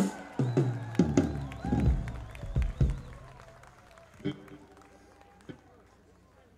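A live band playing a few loose, separate notes and hits on stage rather than a full song: a sharp hit at the start, then several low plucked notes that ring and die away, with a voice over them. It thins out after about three seconds, leaving only a couple of stray hits.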